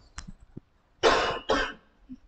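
A man coughing twice in quick succession about a second in.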